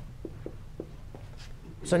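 Dry-erase marker writing on a whiteboard: a few faint short ticks in the first second or so, over a low steady room hum.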